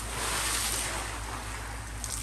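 Swimming-pool water splashing and churning just after a person jumps in, the noise easing slightly as the water settles.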